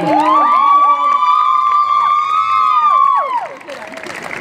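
Several high voices together in one long held whoop: they glide up at the start, hold the high pitch for about three seconds, then slide down and drop away near the end.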